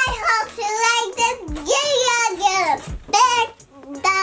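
A little girl's high voice singing in sing-song gliding phrases, without clear words. It breaks off briefly near the end.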